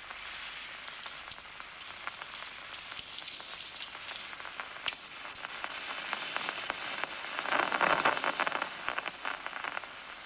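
Amplified nerve recording from a locust's DCMD neuron played through a loudspeaker: a steady crackle of scattered clicks that swells into a dense burst of action-potential spikes about eight seconds in. The burst is the neuron's response to a 10-degree target disc moving across the locust's eye.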